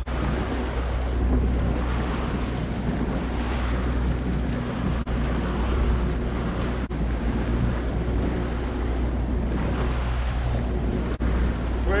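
Outboard motor running steadily, pushing the boat along at trolling speed, with wind buffeting the microphone and the rush of water from the wake. The sound drops out very briefly three times.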